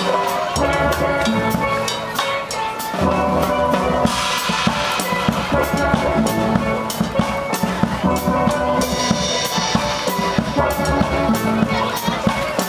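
Steel drum band playing: steel pans sound melody and chords over a drum kit keeping a steady beat on bass drum, snare and cymbals.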